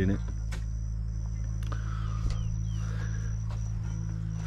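A steady low hum with several fixed pitches, with a thin, steady high-pitched insect drone from crickets above it, breaking off now and then; a few faint clicks and short chirps come through.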